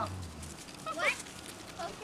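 Six-week-old collie puppy giving a short, pitched whine about a second in.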